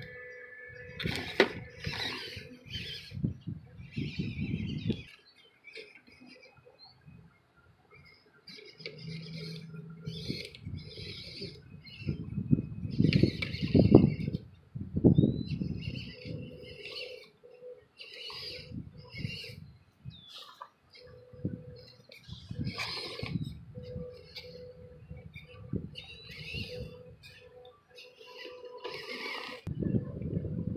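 Radio-controlled WPL B-36 scale truck crawling in stop-start bursts over dry pine needles, grass and twigs. Its electric motor and gearbox give a faint whine, with crackling and rustling of the dry litter under the tyres.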